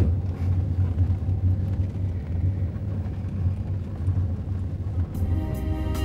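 Steady low rumble of a moving car heard from inside the cabin. About five seconds in, soft music with long held notes begins over it.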